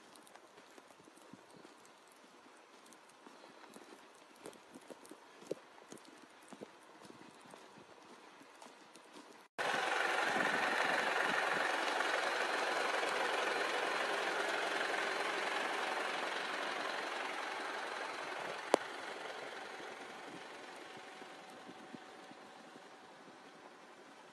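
Faint, irregular crunching steps in deep snow. About ten seconds in the sound changes abruptly to a steady rushing noise, much louder, which slowly fades away.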